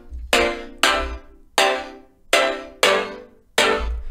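Serum software synth playing short, plucky chord stabs from a chord progression, about six hits in an uneven rhythm, each starting sharply and dying away quickly over a low bass rumble. The progression is played with its bass notes taken out, to show how the chords change without them.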